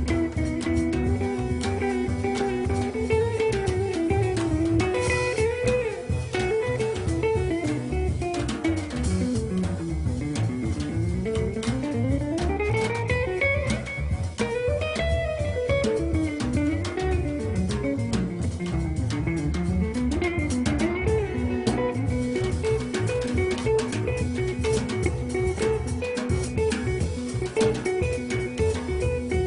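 Instrumental jazz passage from a quartet of guitar, double bass and drums, with plucked guitar over a steady bass and drum-kit accompaniment. Through the middle, a melody line slides down, then up, then down again in pitch.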